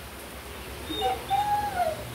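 Dog whining: a brief rising whimper, then a longer high whine about halfway through that holds and falls away near the end.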